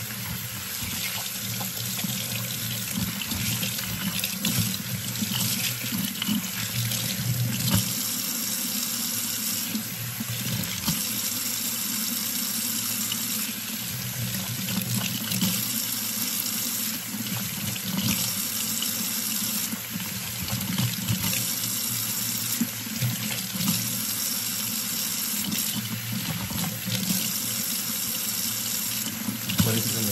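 Kitchen sink faucet running steadily, its stream falling on a shampooed head of hair and into the sink as hands rinse out the lather.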